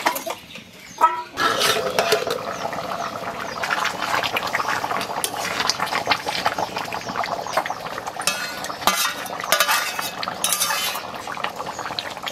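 A metal ladle stirring and scraping around a metal wok of boiling curry, with the thick curry bubbling steadily and small clinks of metal on metal. A sharp metal knock comes about a second in.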